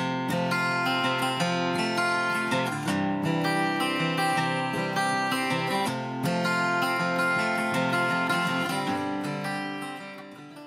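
A 1963 Gibson Hummingbird acoustic guitar being strummed and picked, with ringing chords changing every second or so, fading down near the end. The guitar has just had its frets levelled and its action lowered, and it is playing cleanly.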